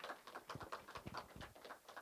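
Light, scattered clapping from a small audience: many irregular sharp claps, several a second, with a few deeper thuds in the middle.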